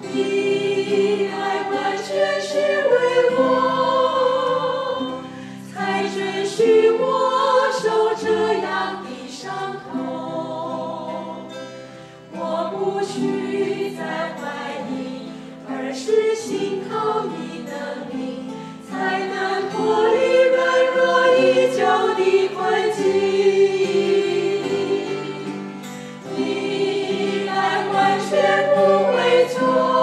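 A small group of mostly women's voices singing a Mandarin Christian worship song together, accompanied by strummed acoustic guitars. It runs through several sung phrases, with short dips between lines.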